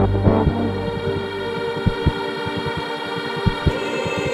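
Hardstyle electronic music in a quieter break: the kick drum and bass drop out about half a second in, leaving sustained synth chords with scattered sharp clicks.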